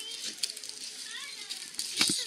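Indistinct chatter of children and adults in a crowd, with a few light clicks.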